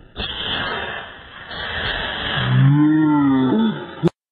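A rushing noise, then, about two and a half seconds in, one long low voice sound that rises and falls in pitch, like a drawn-out moan.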